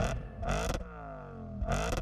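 Two whoosh sound effects about a second apart, each a sudden swell followed by a falling pitch, over a low hum that fades away.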